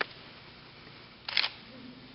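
Quiet room tone broken by a sharp click at the start and a short, louder burst of clicks about a second and a quarter in.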